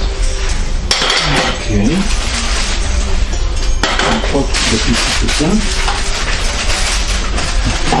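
Plastic packaging crinkling and rustling, with small clinks and rattles of bike-trailer parts being handled and unwrapped.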